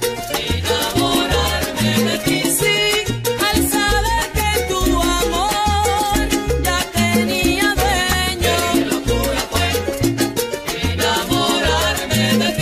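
Salsa music playing, a stretch without singing, with a repeating bass line of short notes under steady percussion.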